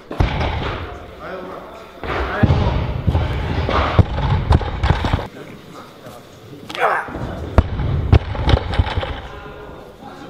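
Loaded barbells with rubber bumper plates thudding onto lifting platforms, several sharp impacts, the sharpest about three-quarters of the way through, over a constant murmur of voices in a large hall.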